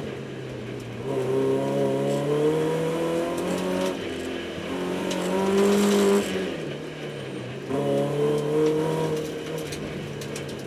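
BMW E30 318is's 1.8-litre four-cylinder engine heard from inside the cabin, accelerating and lifting off between cones: the engine note climbs, dips around four seconds, climbs again to its loudest just past six seconds, falls away, and rises once more near eight seconds.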